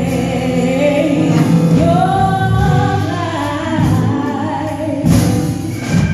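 Gospel choir singing long, held melodic lines over a steady low accompaniment, with a sudden loud hit about five seconds in.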